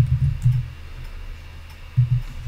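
Computer keyboard keys clicking as code is typed: a few separate keystrokes, the sharpest right at the start and another near the end, over a low hum that fades about half a second in.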